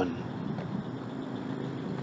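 A low, steady drone made of several held tones, with a faint even hiss above it.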